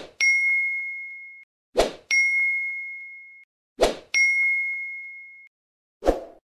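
Sound-effect ding, three times about two seconds apart. Each is a short knock followed by one clear bell-like tone that fades away over about a second.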